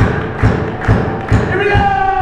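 A live rock band's kick drum beats a steady pulse of a little over two beats a second, with the crowd clapping along on the beat. Near the end a long pitched note comes in and slides steadily downward.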